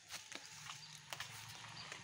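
Quiet outdoor background with a low hum and a few faint, scattered clicks and taps.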